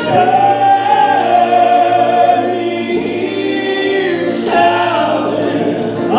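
Male gospel quartet of four voices singing in close harmony, holding long chords, with a new chord entering about four seconds in.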